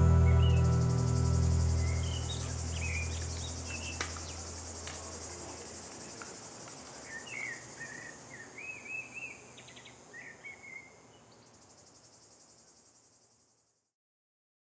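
The song's last low sustained note fades away under a steady high-pitched chirring of insects, with scattered bird chirps. Everything fades to silence shortly before the end.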